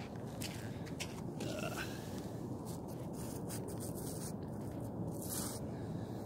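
Scraping at a hard salt crust, a few short scratches over a steady low noise; the crust is too hard to break loose.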